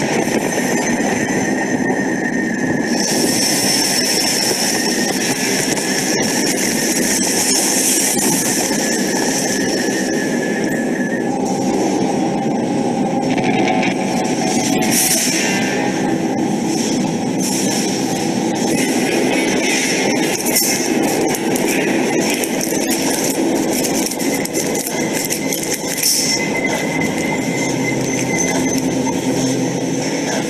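Loud, steady, noisy soundtrack of a shared art video: a dense wash of harsh noise with a few held high tones, and no voice.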